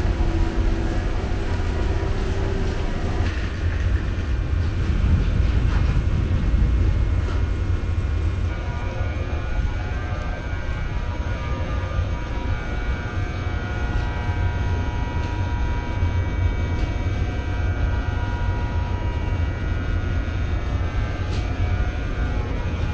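Stationary Korail Mugunghwa passenger train idling at the platform: a steady low drone with faint steady whining tones above it.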